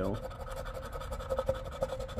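A poker-chip scratcher scraping the coating off a paper scratch-off lottery ticket in quick repeated strokes, with a few sharper ticks.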